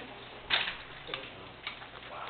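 Three sharp clicks over faint room noise. The loudest comes about half a second in, and two softer ones follow about a second and a second and a half in.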